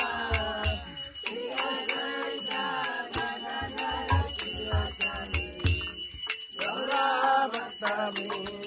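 Devotional kirtan for the morning arati: voices singing a melody over hand cymbals struck in a steady rhythm, with low drum strokes underneath.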